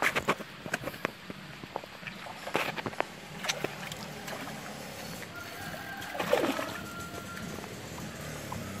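A hooked fish splashing and thrashing at the water's surface as it is played on a rod, with scattered sharp clicks and knocks through the first few seconds.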